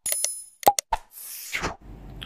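Subscribe-animation sound effects: a click with a small bell ding that rings for about half a second, a few more clicks and pops, then a whoosh that falls in pitch.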